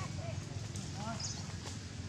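A few short, arching squeaky calls from a baby macaque, near the start and about a second in, over a steady low hum.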